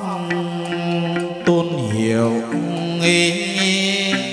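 Chầu văn ritual singing: a sung line drawn out into long held notes, sliding down in pitch about two seconds in. Plucked-string and percussion accompaniment strikes underneath.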